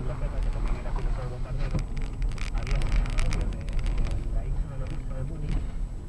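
A car's engine and road noise, a steady low rumble heard from inside the cabin as the car rolls slowly, with a run of light clicks and crackles about two to three seconds in.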